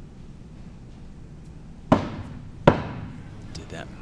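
Two throwing axes striking and sticking in wooden plank targets, one after the other: two sharp impacts a little under a second apart, each with a short ring after it.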